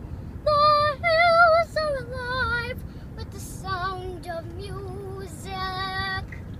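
A young girl singing long held notes with a wavering vibrato, loudest in the first three seconds and softer after, over the steady low road rumble of the moving car.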